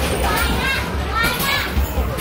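Busy amusement-arcade din: children's voices, with basketballs knocking against a mini basketball machine's backboard and rim as they are shot in quick succession.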